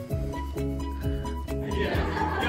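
Background music with a steady beat of about two beats a second over sustained tones.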